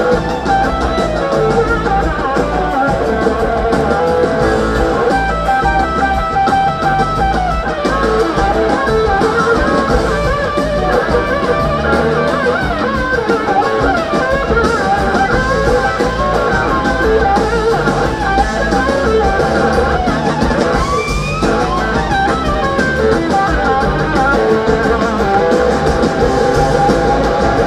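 Live blues-rock band playing an instrumental passage: electric guitar lead lines with gliding, bending notes over two drum kits and bass guitar.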